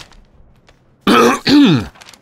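A man clearing his throat with a voiced 'ahem' in two quick parts, falling in pitch, about a second in.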